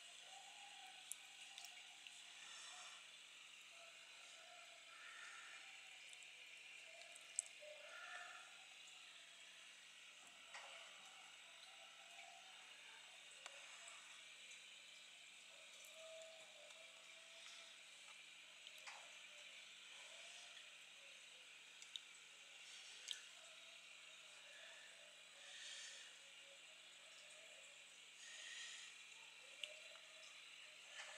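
Faint aquarium aeration: a stream of air bubbles rising through the tank water, heard as soft irregular bubbling over a steady hiss, with a few small sharp ticks.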